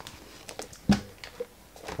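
Sheets of a scrapbook paper pad being turned over and handled: a few short paper rustles and taps, the loudest about a second in.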